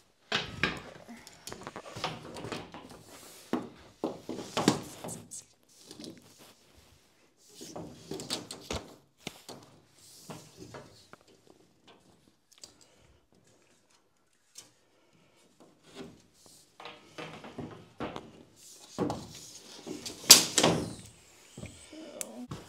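Irregular knocks, scrapes and rattles from handling a metal drywall T-square and a tape measure against propped-up drywall sheets while a sheet is measured and marked. The loudest clatter comes near the end.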